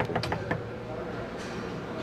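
A quick run of hard knocks on a front door in the first half second, a bit too hard, like a police knock.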